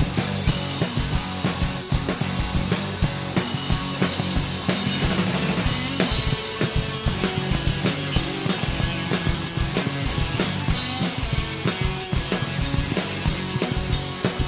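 A rock band playing live: electric guitars, bass and drum kit together in a loud, dense passage. The drum hits come faster and closer together from about halfway through.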